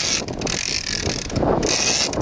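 Fishing reel being cranked, a fast ratcheting whir, as a fish is brought up to the surface on the line.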